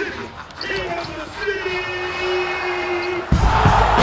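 Basketball bouncing on a gym floor with sharp knocks, while a voice holds one long drawn-out note; a loud music beat with heavy bass comes in suddenly about three seconds in.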